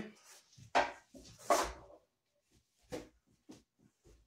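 Movement sounds of a solo cane self-defense drill: two sharp, loud rushes of noise about a second in and again half a second later, then a few faint knocks.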